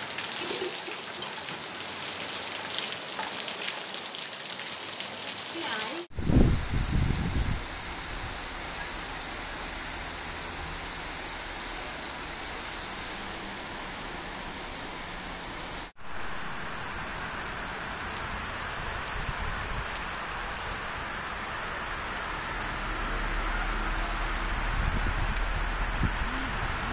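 Heavy rain falling steadily on wet ground and running water: a continuous hiss. A loud low rumble just after six seconds, and the sound drops out for an instant twice.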